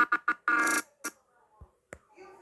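A few short bursts of a steady pitched tone, stopping under a second in, then a couple of faint clicks.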